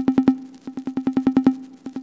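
Electronic music: a steady held note under fast repeating clicks, about ten a second, in groups that swell in loudness and break off roughly once a second.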